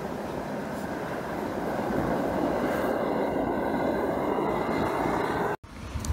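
Diesel-fired Baby Godzilla burner running full into a small foundry, a steady rushing noise of flame and blown air. It grows a little louder about two seconds in, with a faint high whistle over it. It cuts off suddenly near the end.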